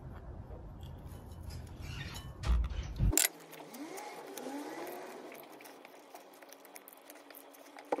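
A gloved hand squeezing and kneading soft cookie dough studded with chocolate chips in a glass bowl. The first three seconds carry a low rumble and a couple of loud thumps that stop abruptly; after that come soft squishing and faint squeaks, and a sharp click near the end.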